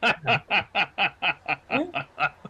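A man laughing in a quick run of short, even 'ha' pulses, about four a second, each dropping in pitch.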